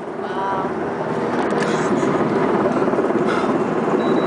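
MH-60 helicopter passing very low and close overhead, its rotor and turbine noise building within the first second and then staying loud.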